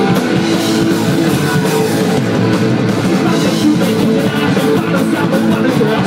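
Live punk-metal band playing loud and without a break: distorted electric guitars over a drum kit.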